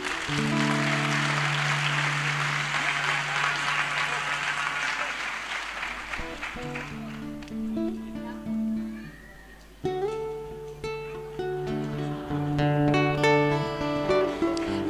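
Audience applauding over the slow opening of a live acoustic guitar piece. The applause fades out after about five seconds, leaving the guitar playing on its own, with a short break just before ten seconds.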